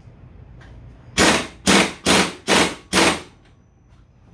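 Pneumatic impact wrench working on the scooter's belt-drive pulley nut in five short bursts, each about a third of a second long.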